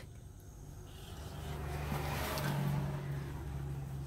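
Low engine hum that swells about a second in and fades toward the end, as of a motor vehicle going by.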